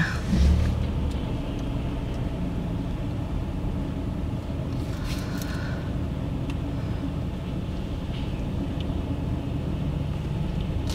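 Steady low rumble of a car's engine and tyres heard inside the cabin as the car rolls slowly under braking, with a brief low bump about half a second in.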